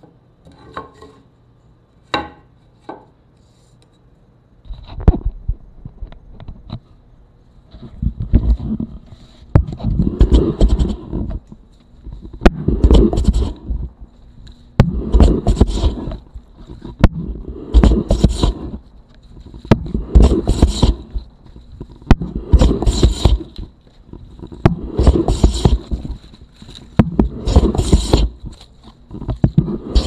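Wooden jack plane truing up a board, taking long shavings in a steady run of about ten strokes, one every two and a half seconds, each a loud rasping scrape with a knock where the stroke starts or ends. A few light knocks come first, before the planing begins.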